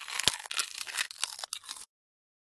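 Crunching of a gingerbread cookie being bitten: a quick run of crisp crunches that cuts off suddenly near the end.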